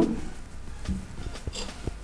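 Faint handling sounds of fingers drawing a thin cord through a knot loop: a few soft small clicks and rustles over a low steady hum.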